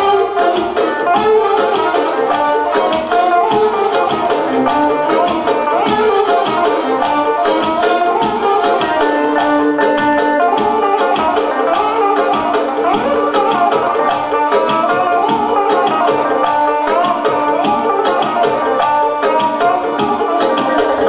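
Live duet of an electric guitar and a Korg Pa800 arranger keyboard: the guitar plays fast, quickly picked melodic runs over the keyboard's accompaniment, with a long held low note partway through.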